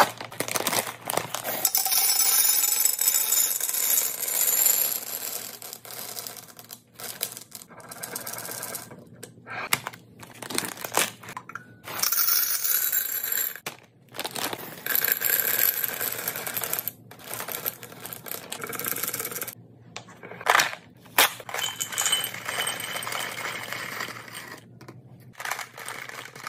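Plastic candy bags crinkling as they are torn and pulled open, and small hard candies pouring and rattling into glass jars, in a run of separate bursts.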